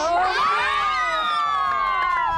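Several children and adults shouting and cheering together in long held yells, the reaction to a goal in a football video game match. The yells swell about half a second in and ease off toward the end.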